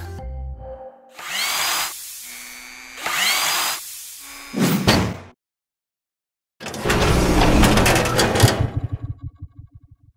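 Logo-sting sound effects: two noisy whooshes with rising whistle-like tones and a short burst, a pause of silence, then a whirring, drill-like mechanical burst that breaks up into rapid clicks as it fades out.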